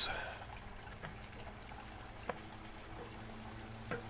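Striped bass fillets sizzling faintly on an oiled grill mat over a low steady hum, with two light metallic clicks, one about midway and one near the end, as a spatula and tongs turn a fillet.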